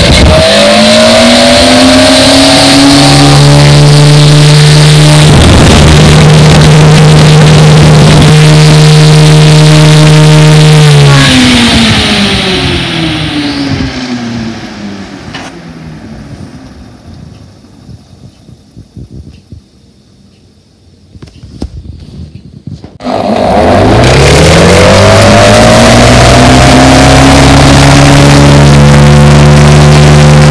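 1931 Gilbert 9-inch desk fan running loudly, its motor hum and blade noise climbing in pitch as it spins up, then holding steady. About eleven seconds in it winds down with falling pitch to near quiet, and at about 23 seconds it starts again and spins back up to full speed.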